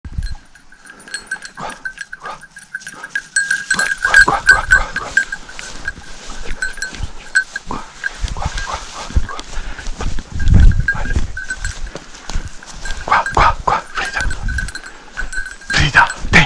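Hunting dogs barking and yelping in short bursts over a bell on a hunting dog's collar ringing almost without pause as the dog runs through the grass. A brief rumble of movement about ten seconds in.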